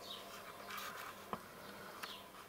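Quiet room tone with a faint, steady buzz, and a single soft click about a second and a third in.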